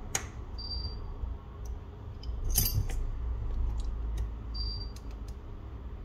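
Small sharp clicks and snaps as an opened iPhone is handled and its display assembly is pressed shut into the frame, with a loud cluster of clicks about two and a half seconds in. Two brief high squeaks come between the clicks.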